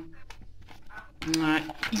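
Metal spoon moving in a plastic bowl of egg-and-sugar mix, giving a few faint clicks against the bowl.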